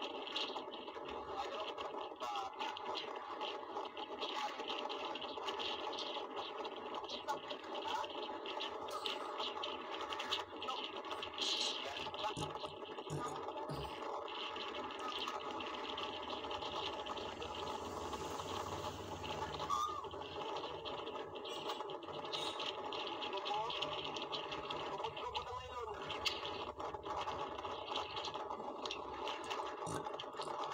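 Indistinct voices over a steady, even drone.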